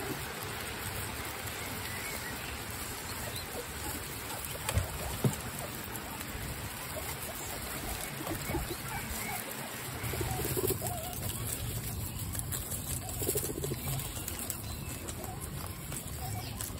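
A herd of guinea pigs munching lettuce leaves together: a steady mass of crunching and rustling in the straw. Two sharp knocks come about five seconds in.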